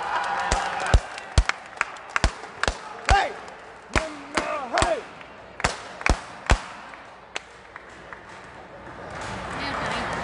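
Sepak takraw ball bouncing and being kicked on the hard court between points: a string of irregular sharp thuds with echo, tailing off after about seven seconds. A few short shouts come in among them.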